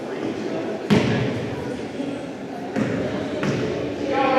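A basketball in a reverberant gym: one sharp bang about a second in, then two softer thumps near the end, over a murmur of voices.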